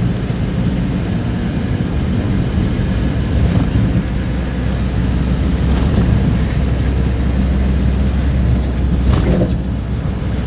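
Pickup truck driving at steady speed: a constant low engine drone with tyre and road noise. A brief sharper sound cuts across it about nine seconds in.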